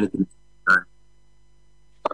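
A man's voice over a video call finishing a phrase, then one short vocal sound, then about a second of quiet with a faint steady hum.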